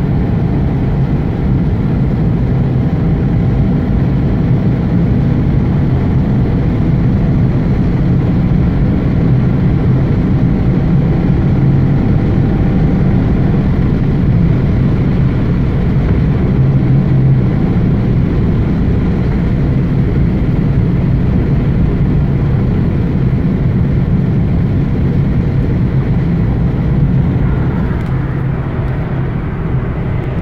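Steady low rumble of tyres and engine heard inside a car's cabin while driving on a motorway, easing a little near the end.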